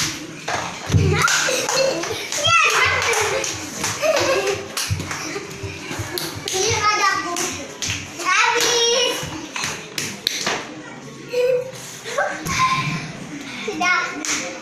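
Young children's voices calling out and laughing as they play, with frequent sharp taps and knocks from bare feet and plastic balls on a tiled floor.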